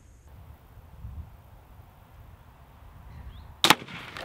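Crossbow shot near the end: a sharp, loud double crack as a wide, steel-tipped bolt is loosed and strikes a hanging balloon of thick non-Newtonian fluid in front of a wooden backplate. Before it there are a few seconds of faint low wind rumble.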